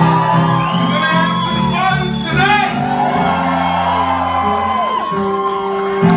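Live rock band playing, with saxophone, guitars, keyboards and drums on stage, and voices singing and shouting over the music.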